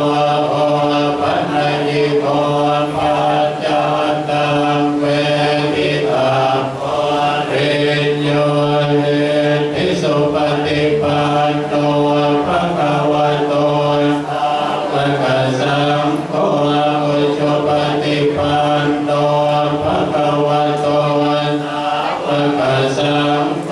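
A group of Buddhist monks chanting in unison on a low, steady monotone, with short breaks for breath every few seconds.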